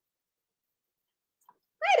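Dead silence, as from a noise-gated stream microphone, then a woman's voice begins near the end with a drawn-out, gliding word.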